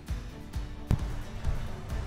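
Background music with held chords and a steady low beat, about two beats a second.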